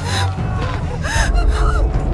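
A young woman gasping sharply in distress, twice, about a second apart, over a steady low rumble.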